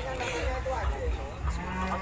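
A head of cattle mooing: one long, low call that begins about one and a half seconds in, over the chatter of a crowd.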